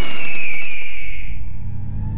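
Film-trailer sound design: a loud swelling hit with a high ringing tone that falls slightly in pitch and fades out about a second and a half in, over a low rumble.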